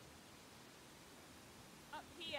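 Near silence: faint outdoor background, with the brief onset of a short pitched animal call right at the very end.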